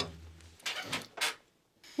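Short scrapes of a plate and knife against a wooden table, over a low background hum that stops about half a second in, followed by a moment of dead silence.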